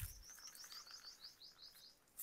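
A small bird's faint trill: a rapid series of about a dozen high chirps, roughly six a second, each note sliding down and the whole run stepping gradually lower in pitch.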